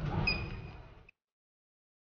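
Handheld UHF RFID reader giving one steady high beep of under a second over a low rumbling noise; the sound cuts off suddenly.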